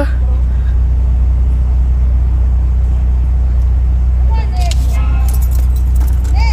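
Steady low rumble of a car idling, heard from inside its cabin. Faint distant voices come through about four seconds in.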